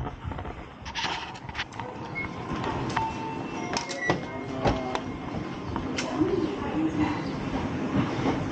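Railway station concourse ambience: footsteps and scattered clicks and knocks, with a few short electronic beeps in the middle, typical of automatic ticket gates, over a steady hum of the hall.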